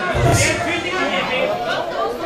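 Chatter of several voices among a gathering, with a short dull thump just after the start.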